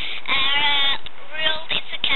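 A young boy's voice, with one long, wavering, drawn-out sound in the first half and shorter vocal sounds after it.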